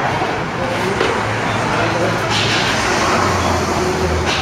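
Steady low rumble of vehicle engines, with indistinct talking mixed in.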